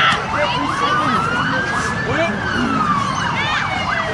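An emergency vehicle siren wailing, its pitch rising slowly for about two seconds and then falling. Quicker rising-and-falling chirps repeat over it.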